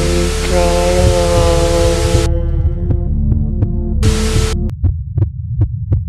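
TV-static hiss over sustained droning music tones and a low hum. The static cuts out about two seconds in and bursts back briefly about four seconds in. Near the end a heartbeat sound effect starts, quick thumps about four a second over a low throb.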